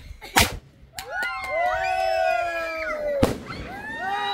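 Firework bangs: a sharp, loud one about half a second in and another just after three seconds, with several overlapping high-pitched calls in between.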